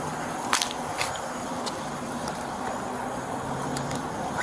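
Low steady hum of a car engine idling, with a few light clicks and rustles from items being handled, the sharpest about half a second in and another at one second.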